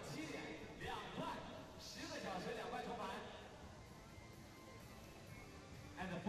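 Faint speech from a venue announcer over a microphone, with background music. The voice dies away after about three seconds.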